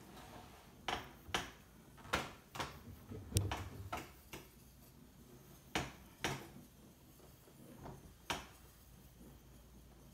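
Irregular sharp clicks and knocks from a handheld torch being handled over a wet acrylic pour painting: about nine of them, most in the first four seconds and a few more later.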